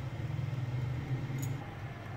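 Tefal electric food steamer heating its water, a steady low hum and rumble, with a faint tick about one and a half seconds in.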